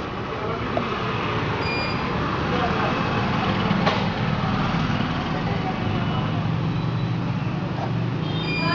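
Steady background noise and low hum, with faint indistinct voices in the distance and a light click about halfway through.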